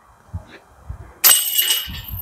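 A putter disc striking the chains of a disc golf basket about a second in: a sudden loud metallic chain rattle with a ringing jingle that dies away within about half a second, the sound of a made putt. Before it, a few soft thumps of steps on grass.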